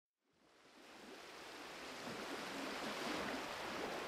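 Sea waves washing ashore: a steady rushing surf that fades in from silence within the first second and swells slowly.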